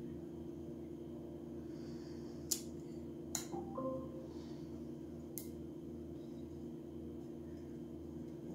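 Light handling of a glass bottle and a vinyl window cling: three faint sharp clicks of fingers and cling against the glass over a steady low room hum.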